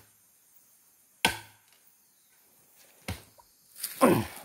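Three sharp chopping strikes on wood: a loud one about a second in, then two more near the end.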